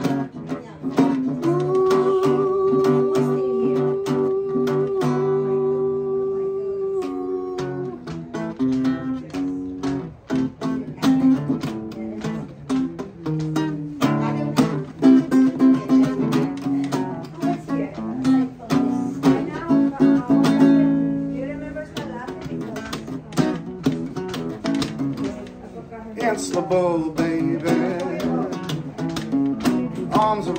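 Cutaway classical-style acoustic guitar strummed in chords, playing a slow instrumental passage of a song. A man's voice holds one long steady note over the first several seconds, and his singing comes back in near the end.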